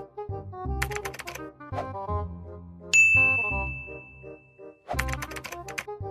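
Computer keyboard typing in two quick bursts, about a second in and again near the end. A bright ding about three seconds in rings on one steady tone for nearly two seconds and is the loudest sound. Light background music plays under it all.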